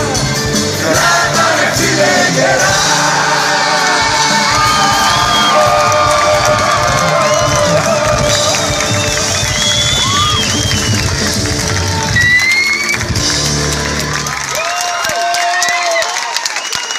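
Live rock band with acoustic and electric guitars and drums playing the instrumental close of a song, loud and steady, with crowd cheering and whoops over it. Near the end the drums and bass drop away, leaving a held note.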